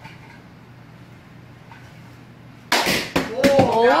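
Quiet room tone, then near the end a sudden loud smack of a plastic wiffle ball striking something hard, with a brief clatter, followed at once by a man's shout of "oh, no."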